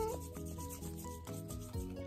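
A child rubbing her palms together: a soft, steady rubbing of skin on skin.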